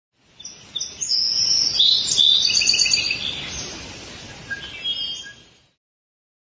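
Recorded birdsong: several birds chirping and trilling over one another, over a faint low outdoor background, fading in near the start and fading out near the end.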